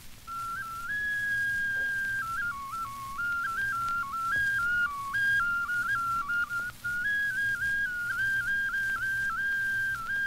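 A single high, whistle-like wind instrument playing a simple melody in almost pure tones, stepping up and down among a few notes with brief breaks between phrases, entering after a short pause. Steady hum and hiss from a 78 rpm shellac record lie beneath it.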